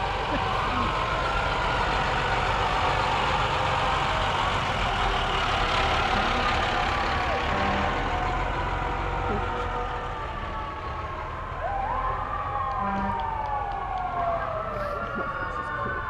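A fire engine's siren wails in slow rising and falling sweeps, with the truck's engine rumbling low underneath.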